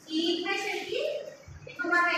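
Speech only: a woman's voice lecturing.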